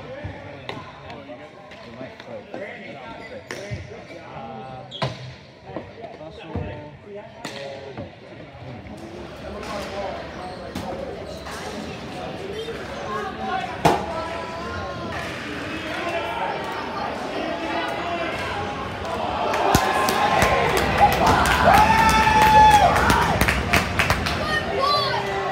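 Indoor ball hockey play: sticks clacking and the plastic ball knocking off the court and boards, with players and spectators shouting. The knocks and shouting get louder and busier over the last few seconds.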